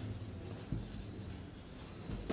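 Faint strokes of a marker writing on a whiteboard.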